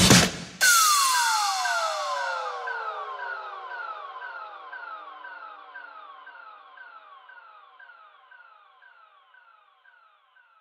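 Electronic dance music cuts off just after the start, giving way to a synthesizer effect: short falling pitch sweeps, about two a second, over one long slow downward glide, fading out steadily to nothing near the end.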